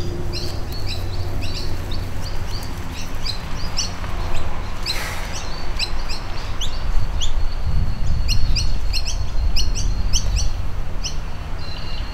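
Small birds chirping repeatedly in the trees, with short high chirps coming several times a second, over a steady low wind rumble on the microphone that grows louder in the second half.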